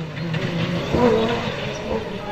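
Rally car engine heard moving away on a dirt stage, its note rising briefly about a second in as the driver accelerates.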